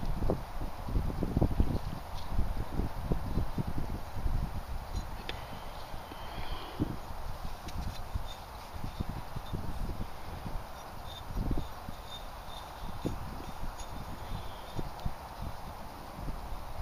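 Wind buffeting the microphone outdoors: irregular low rumbles and thumps throughout, over a steady outdoor hiss.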